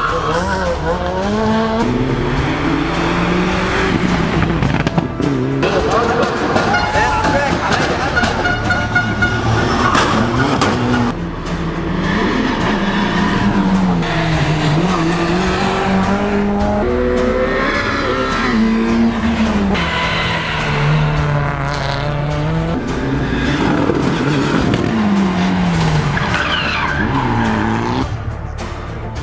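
Rally car engines revving hard through tight bends, among them a Renault Clio R3's four-cylinder: the pitch climbs, drops with each gear change or lift, and climbs again several times. Music plays underneath.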